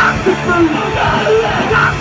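Live rock band playing loud with electric guitars, with yelled vocals.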